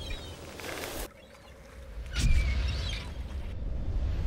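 Wind and surf noise with a steady low rumble and a few faint, high, wavering bird calls. The sound drops away about a second in and comes back after about two seconds.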